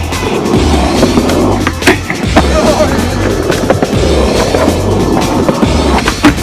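Skateboard wheels rolling on pavement, with a sharp clack about two seconds in, over background music with a steady, repeating bass beat.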